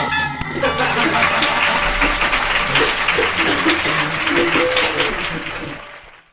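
Audience applause and cheering mixed with music, fading out near the end.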